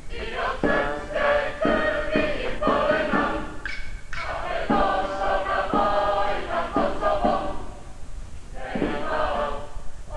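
A group of voices singing together in short chanted phrases, each starting with a sharp accent about once a second, with a brief lull near the end.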